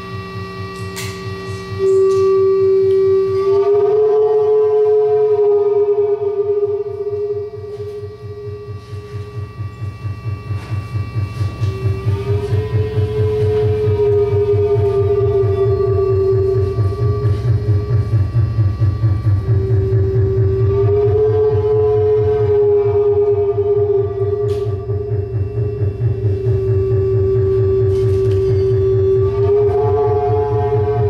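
Analog synthesizers playing an electronic noise improvisation: a sustained siren-like tone that swoops upward and settles again every eight or nine seconds, over a low, rapidly pulsing drone.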